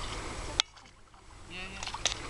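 Faint voices over steady outdoor noise, broken by a sharp click about half a second in; the sound then drops to near quiet for about a second before the voices and noise come back, with another click at the end.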